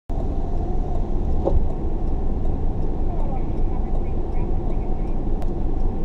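A car idling, heard from inside the cabin: a steady low rumble with a light click or two.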